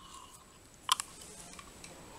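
Quiet room tone with one short click about a second in and a fainter one just after: a plastic spoon knocking against the cup while stirring the hot chocolate drink.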